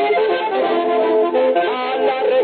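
Accordion music playing sustained melody notes, an instrumental phrase of a sung closing theme song in a traditional Mexican style.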